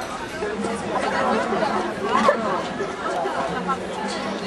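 Indistinct chatter: several voices talking over one another, no words standing out.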